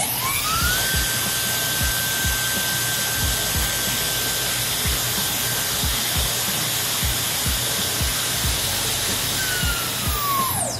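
Gamma+ XCell hair dryer with a high-speed brushless motor switched on: its whine rises quickly to a steady high pitch over a strong rush of air, then falls in pitch and winds down as it is switched off near the end. A background music beat underneath.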